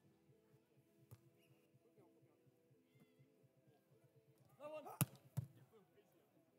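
Faint hand contacts on a beach volleyball during a rally: a sharp hit at the start and another about a second in, then a player's short shout followed about five seconds in by the loudest hit, with one more a moment later.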